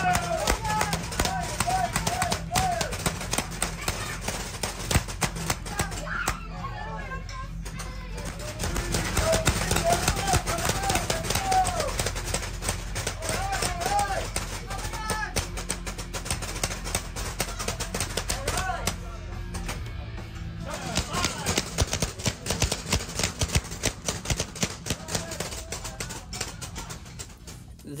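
Many paintball guns firing in rapid, overlapping clicks and pops, on and off through the whole stretch.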